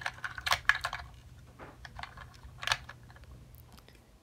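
Light clicks and taps of hard plastic toy figures being handled and fitted into the seats of a plastic toy car, several in the first second and one more a little before the end.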